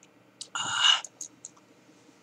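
A short, loud breathy rush from a person, about half a second long, such as a sigh or sniff, followed by a few light clicks.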